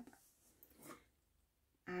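Near silence: room tone in a pause between spoken sentences, with a faint, brief soft sound about a second in.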